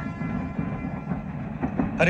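Steady rumble of a passenger train, with a few short clanks near the end.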